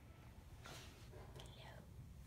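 Near silence: room tone, with a faint, soft whisper-like sound around the middle.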